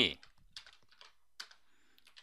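Computer keyboard typing: a few faint, scattered keystrokes.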